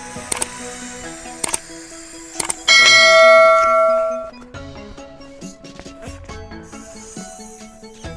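Background music, with a few click sound effects in the first three seconds and then a loud bell ringing for about a second and a half before fading: the sound effects of a subscribe-button animation.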